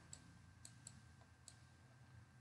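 Near silence with a few faint, irregular clicks from a stylus tapping a drawing tablet while writing.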